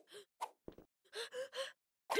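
A cartoon character's short breathy vocal sounds: gasps and huffs, three quick ones in the second half, with a tiny click just before them.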